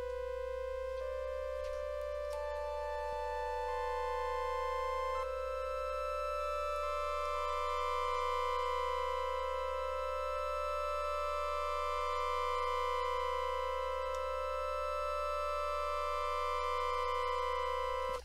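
Bitwig Studio's Organ synth sounding a sustained keyboard chord. Notes come in one after another about once a second over the first five seconds, then the chord is held. The Classic LFO is set to per-voice, so the LFO restarts with each key and slowly shapes each note.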